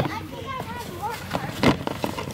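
A cardboard box handled and turned over on grass, with a few short knocks, the loudest about three-quarters of the way in. Faint voices murmur underneath.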